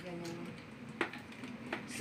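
Trays and hinged panels of a hard makeup trolley case being handled and set back in place: a light knock about a second in and another just before the end, with a faint murmur of a voice at the start.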